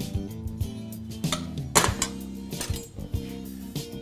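A spoon clinking against a metal muffin tin a few times as vegetable-and-cheese filling is spooned into pastry cups, the loudest clink a little under two seconds in, over background music.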